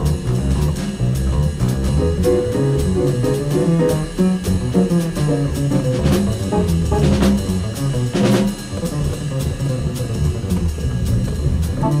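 Acoustic jazz quintet playing live, with a moving double-bass line under drums and busy mid-range melodic playing, and cymbal crashes about six and eight seconds in.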